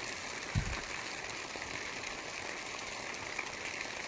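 Shallow mountain stream running over rocks, a steady rushing hiss, with a brief low thump about half a second in.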